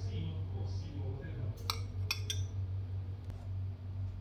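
A metal spoon clinking against the steamer pot while lifting out a steamed carrot ball: one clink a little before the middle and two quick ones just after, over a steady low hum.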